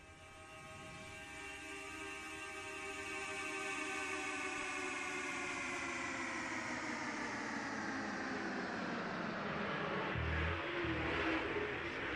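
A pack of super late model dirt-track race cars' V8 engines accelerating to the green-flag start, the combined engine note rising steadily in pitch and growing louder. A brief low thump comes about ten seconds in.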